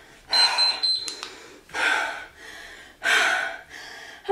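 Hard breathing from exercise effort: forceful exhales about once every 1.3 seconds, three in all. A high electronic interval-timer beep sounds from about a third of a second in for under a second, marking the end of the interval.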